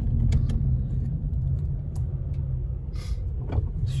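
Steady low engine and road rumble of a car being driven, heard from inside the cabin, with a few faint clicks and a brief hiss about three seconds in.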